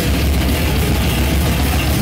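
Live death metal band playing loud and without a break: heavily distorted, low-tuned guitar over drums, with a dense, heavy low end.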